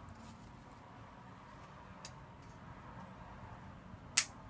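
Faint, quiet handling of leaves as they are folded and pinned into floral foam, with a small click about two seconds in.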